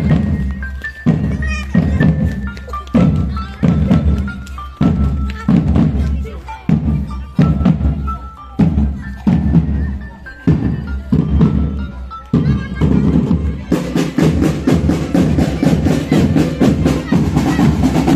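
Marching drum band playing: a steady beat of bass-drum hits under a stepping melody line, then about fourteen seconds in the percussion thickens into a dense, fast, much brighter rhythm.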